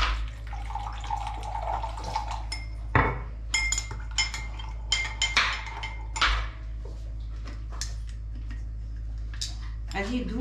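Liquid poured from a small bottle into a drinking glass for about two seconds. Then a metal spoon stirs sugar into it, clinking repeatedly against the glass with short ringing strikes.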